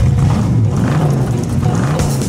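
1969 Ford Mustang Mach 1's V8 engine revving hard with a deep exhaust note. It comes in suddenly and loud, its pitch swinging up and down several times.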